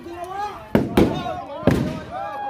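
Firecrackers going off in three sharp bangs, the loudest about a second in, each with a short echoing tail.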